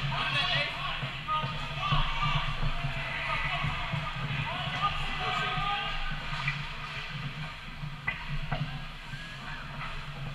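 Indoor ice hockey rink during a youth game: distant, echoing voices of players and spectators, skate blades scraping the ice, and two sharp stick or puck clicks about eight seconds in, over a steady low hum.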